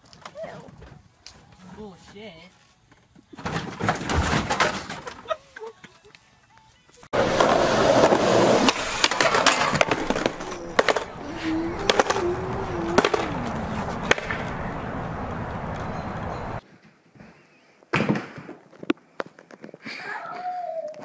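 Skateboard wheels rolling over concrete, with sharp clacks and knocks as the rider falls, running loud for about ten seconds in the middle. Before it come a short loud clatter and a man's exclamation, and near the end a few isolated knocks.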